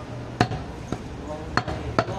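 Butcher's cleaver chopping goat meat on a wooden stump block: a few sharp chops, the loudest about half a second in.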